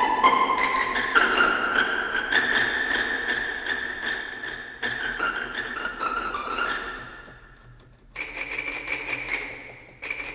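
Spitfire Audio Epic Strings sampled strings played from a keyboard: a run of high string notes, each ringing on and overlapping the next, dying away about eight seconds in. One last note comes in and fades out.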